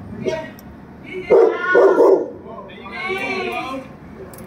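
A dog barking: three loud, short barks in quick succession between one and two seconds in, then a higher, drawn-out pitched call.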